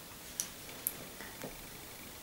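A few faint, irregular clicks from handling a small glass pot of gel eyeliner.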